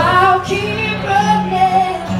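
A woman singing a song live into a microphone, sliding up into a note at the start and then holding long notes, over her own strummed acoustic guitar.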